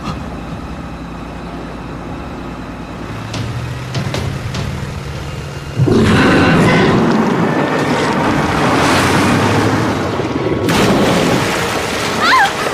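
Film sound effects: an inflatable boat's outboard motor hums steadily, then about six seconds in a sudden loud boom and monster roar as a giant crocodile lunges from the riverbank, lasting several seconds.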